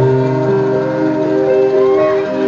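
Concert music over a PA: a loud held synth chord of several steady notes, without speech or a beat.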